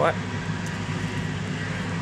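Steady low hum of distant factory machinery, an even drone with a faint higher whine above it.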